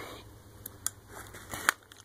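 Handling noise: a few small sharp clicks over a quiet background, the loudest shortly before the end.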